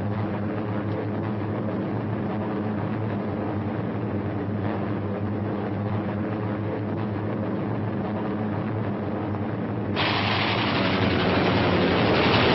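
Steady drone of a bomber's piston engines in flight, one low even hum. About ten seconds in, a louder, harsher rushing noise joins it.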